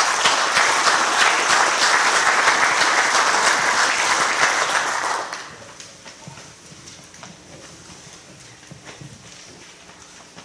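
Audience applauding, a dense patter of many hands clapping, for about five seconds before dying away.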